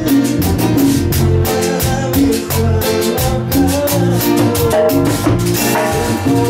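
Live band music with an electronic keyboard and a drum kit playing an instrumental passage with a steady quick beat.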